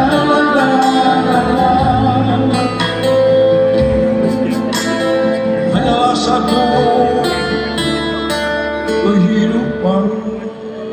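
Live band music: plucked guitar and long held notes, with singing.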